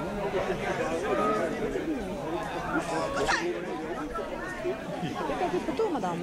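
Overlapping chatter of several people talking at once, with a brief high rising call about three seconds in.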